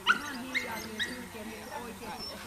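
A dog yipping: three short, high, rising yips about half a second apart in the first second.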